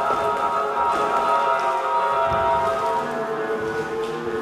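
Instrumental music with long, held chords.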